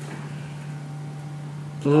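Pause in a lecture: a steady low hum of room tone, with a man's voice starting again near the end.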